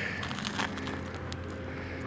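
Quiet background noise: a steady low hum under a faint hiss, with a couple of faint ticks.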